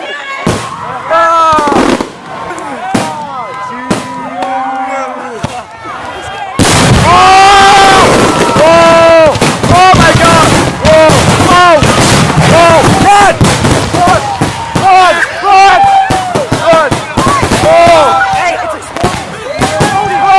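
A fireworks display misfiring, shells bursting at ground level in a rapid barrage of bangs and crackles, with many short high wails over it. The barrage turns much louder and denser about six and a half seconds in.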